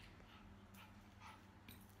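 Near silence, with a few faint short sounds from a nervous small dog.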